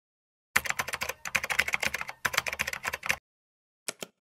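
Computer keyboard typing sound effect: a quick run of keystrokes lasting about two and a half seconds, starting half a second in, with two brief breaks. A single mouse click follows near the end.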